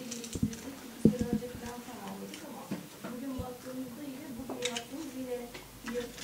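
A person speaking in a room, with scattered light clicks and clinks of china and cutlery at a laid table.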